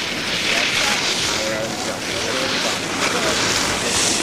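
Steady wind hiss on an outdoor microphone, with faint talk partway through.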